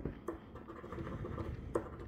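A metal coin scratching the coating off a scratch-off lottery ticket: quiet scraping with a couple of sharper scratch strokes.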